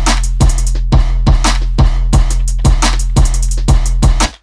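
Trap drum beat playing back from the sequencer: a long, deep kick-bass sample holding a low note under claps, snare and a fast hi-hat pattern, with evenly spaced hits.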